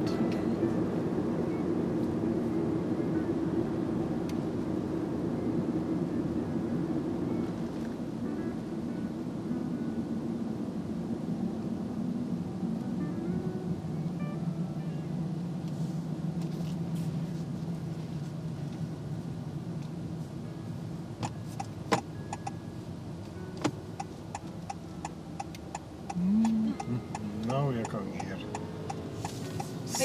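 Steady road and engine noise inside a moving Honda car's cabin. From about two-thirds of the way in, the turn-signal indicator ticks steadily.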